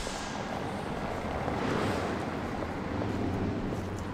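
City street traffic: a steady noisy rumble of passing vehicles, swelling about halfway through and deepening near the end.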